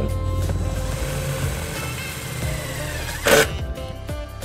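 Cordless drill driving a self-tapping screw through a plastic converter box into the steel vehicle frame. The drill runs steadily for about three seconds, then there is a short loud burst of noise as the screw goes home.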